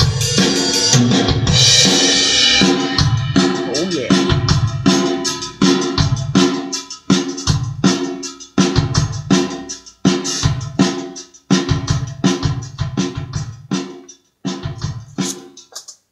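Drum-kit track, kick and snare about two hits a second with a cymbal crash about two seconds in, played through a home-built clone of the RCA BA-6A valve compressor. The compressor is slammed into heavy gain reduction.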